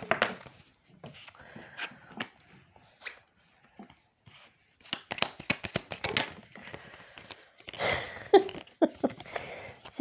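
A deck of oracle cards being shuffled by hand, with a quick run of card clicks about halfway through, and cards slid and laid onto a cloth with soft rustles.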